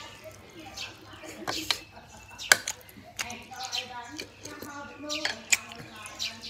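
Close-up mouth sounds of someone eating boiled pig's-head meat: wet chewing and lip-smacking, with a few sharp smacks, the loudest about two and a half seconds in and again near the end. A voiced murmur runs through the middle.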